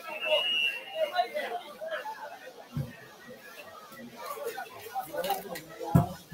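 Indistinct voices and chatter from the pitch-side booth and field, with no clear words. A short steady high tone sounds within the first second, and a few brief dull thumps come later.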